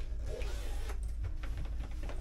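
Hard-shell suitcase being handled while packing: rustling over the first second, then light knocks as the lid is lifted to close, over a steady low hum.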